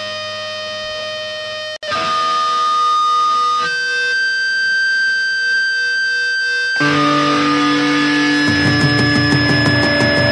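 Band playing live: heavily distorted electric guitar holding long ringing notes that shift pitch every few seconds, cutting out for an instant just before two seconds in. From about seven seconds in it gets louder and fuller, with a fast steady pulse near the end.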